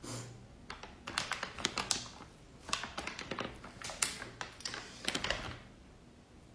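Bursts of crisp crackling and clicking as hands pull a slice out of a chocolate mille crepe cake, coming in several clusters over a few seconds.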